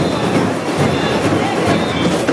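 Samba batucada drum group playing in the street: a loud, dense mass of drums with no separate beats standing out.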